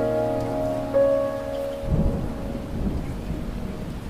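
Soft piano background music that breaks off about halfway through, followed by a low, uneven rumble.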